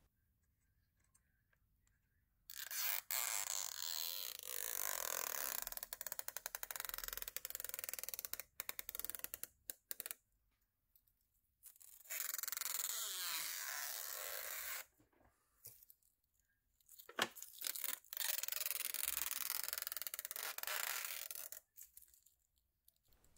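Clear protective plastic film being peeled off aluminium LED strip housings and their diffusers: three long peels of a few seconds each, with a fast crackle as the film lifts away.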